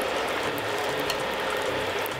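Unripe plantain slices frying in a saucepan of hot oil: a steady sizzle with fine crackling.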